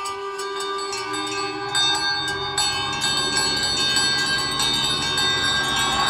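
Several small bells jangling rapidly and without pause, many tones ringing at once and growing steadily louder.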